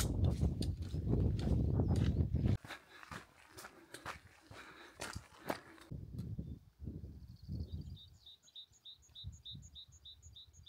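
Footsteps crunching on a gravel track, with wind buffeting the microphone; this cuts off suddenly about two and a half seconds in. What follows is quieter, with scattered faint knocks, and in the last few seconds a small bird calls in a steady run of short high chirps, about two a second.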